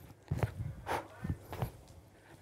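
Trainers landing on a wooden floor during kettlebell jumping lunges: about four soft thuds a little under half a second to a second apart, with the jumper's breaths between them.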